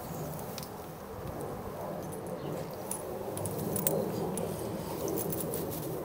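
Faint jingling of a dog's collar tags: a few light, scattered clicks over a steady low background hum.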